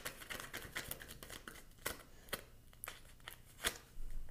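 Tarot cards being shuffled and handled: a quick run of light flicks and riffles, with a few sharper card snaps in the second half.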